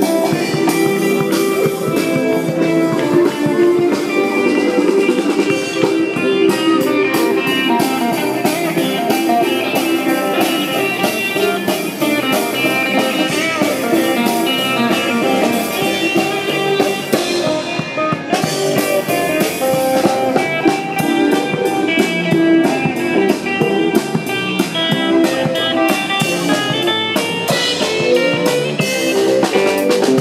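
Live street band playing an upbeat, blues-tinged song: a guitar through a small amplifier over a steady beat on a drum kit with a bass drum.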